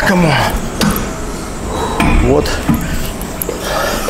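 A man's voice in two brief grunts of effort during the last reps of a cable lat pulldown, with a few sharp metallic knocks from the machine's weight stack.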